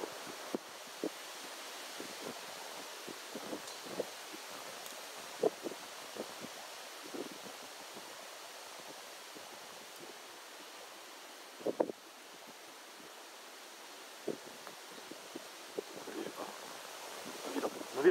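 Steady wind noise on the microphone, with a few brief faint sounds scattered through it.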